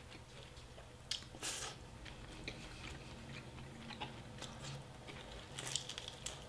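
Faint chewing of crispy fried chicken, a mouth working with a few short crunchy clicks scattered through.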